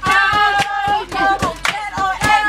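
A group of girls singing a chant together while clapping their hands in rhythm, several claps a second.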